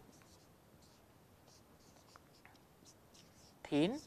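Marker pen writing on a whiteboard: faint, scattered short scratchy strokes. A short spoken word comes near the end.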